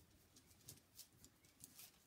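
Near silence, with faint scattered rustles and soft ticks from hands handling and squeezing a stuffed fabric sock gnome.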